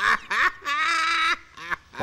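A man's loud, high-pitched laugh: a few short bursts, then one long wavering held note, and a short last burst near the end.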